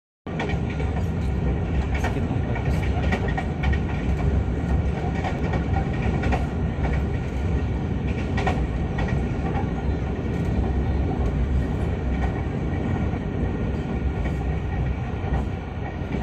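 Moving passenger train heard from inside the carriage: a steady low rumble of wheels on the rails, with occasional faint clicks from the track.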